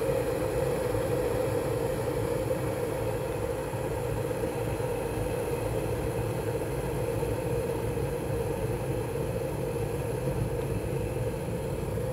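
Stainless steel electric kettle of about 2 kW at a full boil, water bubbling in a steady rumble that does not change.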